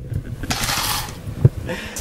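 A plastic scoop scraping and rattling through freshly crushed ice in the plastic catch tray of a countertop ice crusher, with one sharp knock about one and a half seconds in.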